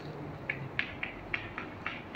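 Chalk writing on a chalkboard: a string of short, separate taps and scratches, about six strokes spaced a quarter to half a second apart.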